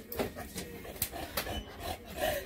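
A dog's claws scraping and clicking on the plastic housing of an EGO cordless snowblower as it scrambles up onto the machine, with a few sharp clicks among the scraping.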